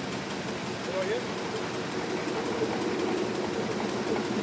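Koenig & Bauer Rapida 106 sheetfed offset printing press running in production: steady mechanical running noise with a low hum.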